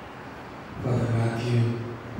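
A man's voice intoning a liturgical prayer on a steady, held pitch, chant-like rather than spoken, starting after a short pause about a second in.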